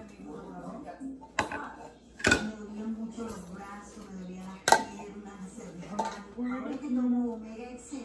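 Ceramic bowls and cooking utensils clattering, with four sharp knocks, the loudest a little after two seconds and just before five seconds in, over quiet background talk.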